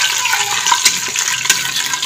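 Whole spices sizzling and crackling in hot ghee in an aluminium pressure cooker, with a steady sizzle full of small pops as a steel ladle stirs them.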